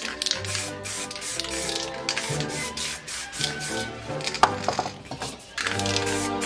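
Background music over the hiss of aerosol spray paint cans sprayed in short bursts, with a sharp knock about four and a half seconds in.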